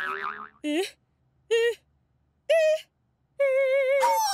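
Cartoon springy boing sounds: three short, wobbling tones, each a little higher than the last, then a longer wobbling one near the end, as a letter character bounces.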